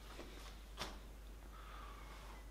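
Quiet room tone with two faint clicks, the second and clearer one a little under a second in.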